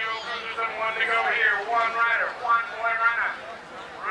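A man's voice talking throughout, the race announcer calling the moto, with the words not made out.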